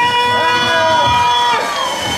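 A voice on a microphone holds one long, high, steady note, starting right after the count of three and ending about a second and a half in. A second voice wavers underneath it in the middle, over a low crowd haze.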